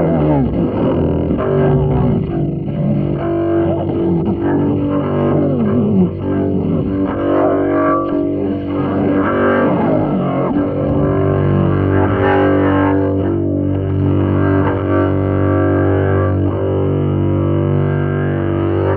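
Solo double bass in free improvisation: sliding, swooping pitches through the first half, then settling into long held tones rich in overtones from about halfway.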